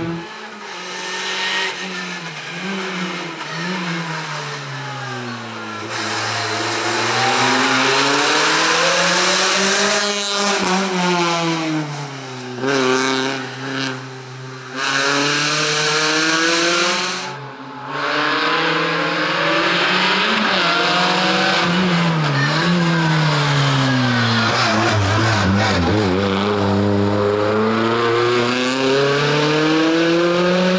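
A first-generation Renault Clio's engine revs hard and drops back again and again as the car accelerates, brakes and shifts through a slalom course. The pitch climbs and falls every few seconds, and the sound breaks off abruptly a few times.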